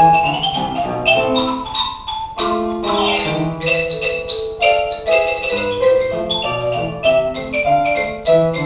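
Xylophone solo: quick mallet-struck notes in a running melody, over held lower notes.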